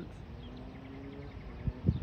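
Outdoor background with a faint steady hum, and two dull low thumps close together near the end.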